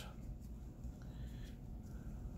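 Quiet room tone with a low steady hum and no distinct event.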